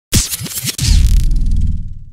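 Electronic logo sting: quick scratch-like swishes, then a deep boom about a second in that rings on and fades away.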